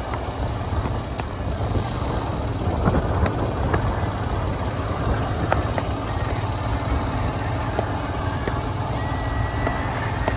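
Steady low rumble of a vehicle in motion, heard from on board, with a few small clicks scattered through it.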